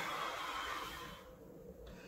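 A man's long, slow exhale, a deliberate calming breath let out slowly, fading away about a second and a half in.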